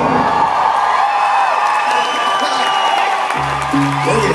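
Live band music at the close of a song: a held keyboard chord over crowd cheering and whoops, with low bass notes coming back in near the end.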